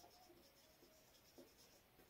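Faint squeaks and scratches of a marker pen writing a word on a whiteboard, in short strokes.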